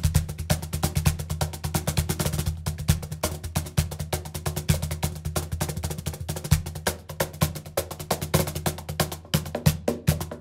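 Music: a cajon, the Meinl AE-CAJ5 Artisan Bulería Line, played in a fast, dense rhythm of hand strokes, several a second, over a steady low bass.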